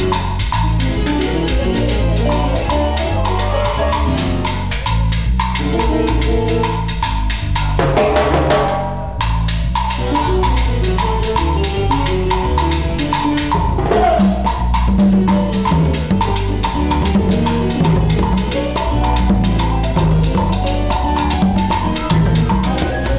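A live band playing a Latin groove: synth keyboard over drum kit, congas and guitar, with a steady rhythm and a full low end.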